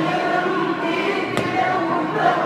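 Many voices singing a devotional hymn together in a steady chorus, with a single brief click about one and a half seconds in.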